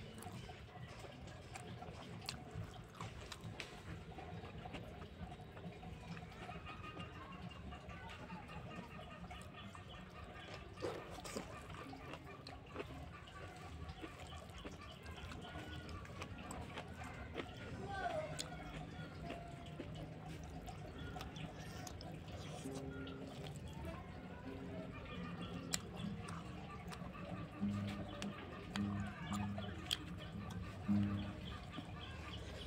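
Close-up eating sounds of a hand-eaten meal: chewing and small mouth clicks, and fingers working rice on a wooden plate, with chickens clucking in the background.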